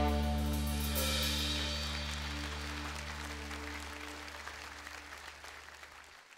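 A live band's last chord ringing out after the final hit, the held bass and keyboard notes dropping away one by one, with audience applause over it, all fading steadily away.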